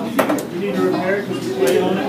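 Foosball table in play: sharp clacks of the ball and the rod-mounted men knocking, one just after the start and one near the end, over background voices.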